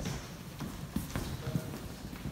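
Footsteps on a wooden floor: a few irregular hard steps of people walking about in a hall.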